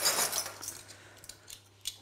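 Metal kitchen utensils clinking and rattling as they are gathered up from a chopping board: a sudden clatter at the start that fades away, then a few light clicks near the end.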